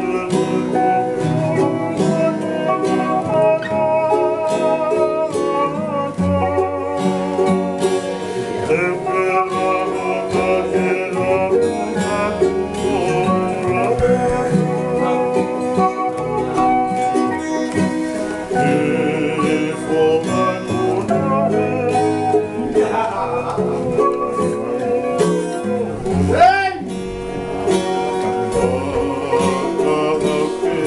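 A man singing a Tongan kava-circle (faikava) song solo, with wavering, held notes, accompanied by a plucked and strummed acoustic guitar.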